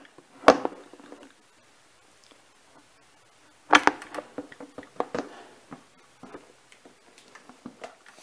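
Knocks and clicks from fitting the hood back onto an Elco EP20 electric outboard motor and working its metal latch clip: a sharp knock about half a second in, a louder one just before four seconds, then a run of lighter clicks and taps.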